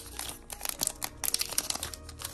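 Foil trading-card pack wrapper crinkling in the hands: a quick, irregular run of crackles.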